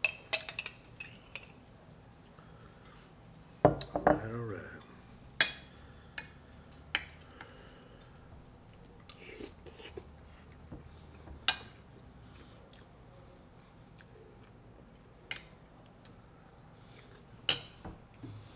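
A metal spoon and fork clinking and scraping against a glass jar and a plate while eating: scattered sharp clinks, about a dozen, at uneven intervals. A short, low vocal sound comes about four seconds in.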